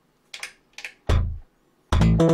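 Modal Electronics Argon8 wavetable synth sounding short, deep, plucked bass notes while patches are being called up: two faint clicks, then a bass note about a second in and another near the end.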